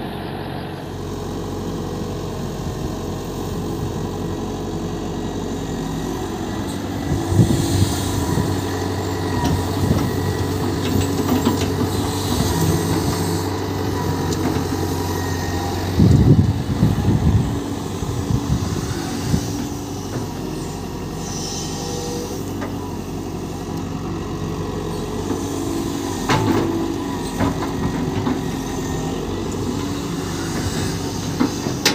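Hitachi EX120-1 hydraulic excavator's diesel engine running steadily under digging load. Three louder spells of knocking and clatter cut through it as the machine works, the loudest about halfway through.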